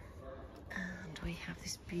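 A woman speaking softly, with a single brief knock about a second in.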